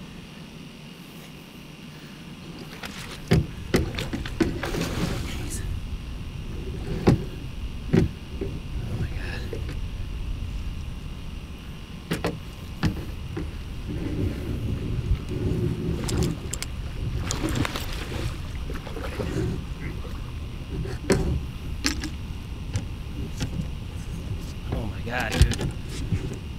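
Knocks and thumps in a fishing boat at uneven spacing, over a low rumbling handling noise, as a big flathead catfish is brought aboard. After a quieter first two seconds the noise sets in, and the loudest knocks come about three, seven and eight seconds in and near the end.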